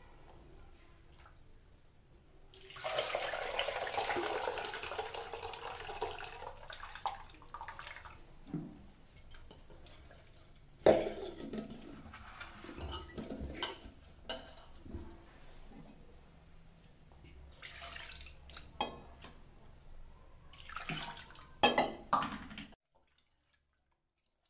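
Liquid poured into an aluminium pot: a few seconds of steady splashing as the blended tomato and tamarind mixture goes in. Then scattered knocks and clatter of the pot and utensils being handled.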